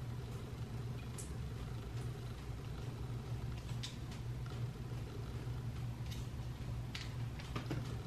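Quiet room tone with a steady low hum, and a few faint light clicks, about three spread over the stretch, from a pencil flat iron being handled and clamped on hair.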